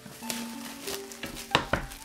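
Plastic shrink-wrap crinkling as it is pulled off a tablet box, with two sharp crackles near the end, over soft background music with held notes.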